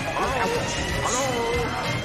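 Music playing loudly over a busy din, with people's voices calling out twice over it.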